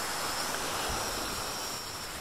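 Steady outdoor noise of wind and small waves on a lake shore, with a faint steady high-pitched tone running above it.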